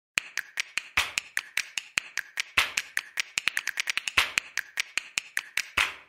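A rapid, uneven run of sharp, dry clicks, about six or seven a second, bunching closer together in the middle and stopping abruptly near the end. It is an intro sound effect leading into the logo.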